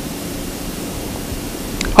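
Steady hiss and room tone, with a faint click near the end.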